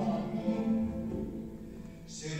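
Plucked-string orchestra of mandolins and guitars playing sustained chords, the sound fading toward the end.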